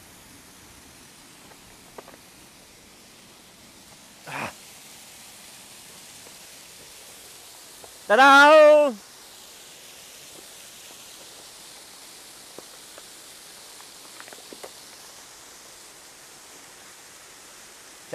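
Steady rushing hiss of a distant waterfall, with a short call about four seconds in and a loud quavering cry lasting about a second around the middle.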